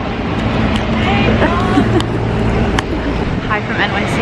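City street traffic: a steady low engine rumble from passing vehicles and buses, with indistinct chatter of passers-by and a few brief clicks.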